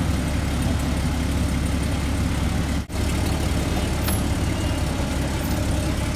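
Car engine idling steadily, heard from inside the cabin, with a momentary break in the sound about three seconds in.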